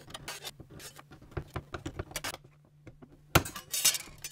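Beverly throatless shear cutting thin brass sheet: a run of short metallic snips and clicks as the blade bites and the sheet shifts, a brief lull, then a louder snap and a quick cluster of clicks near the end. A faint steady low hum lies underneath.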